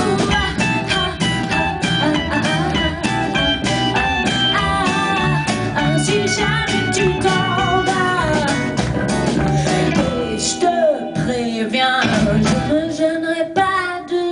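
Live rock band playing a passage between sung lines: electric guitar lines over bass and a drum kit. About eleven seconds in, the drums and bass thin out, leaving mostly guitar and voice.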